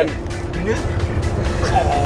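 Tour bus running on the road: a steady low rumble from engine and tyres heard inside the cabin, with music playing over it.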